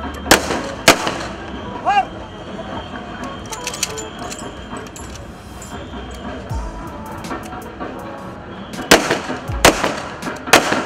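Police rifles firing volleys of a ceremonial gun salute into the air, a ragged group of sharp cracks in the first second and another just before the end. Background music and crowd noise run under the shots.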